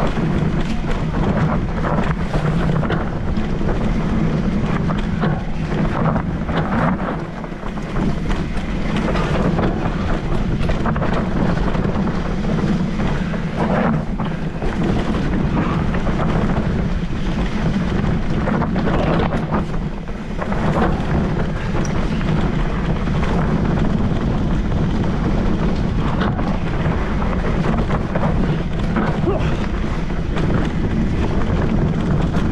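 Mountain bike riding down a dirt singletrack: constant wind rush on the microphone over tyre noise, with frequent knocks and rattles from the bike over the rough trail.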